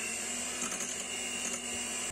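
Electric hand mixer running at a steady speed, its beaters whipping cream in a glass bowl; the motor cuts off near the end.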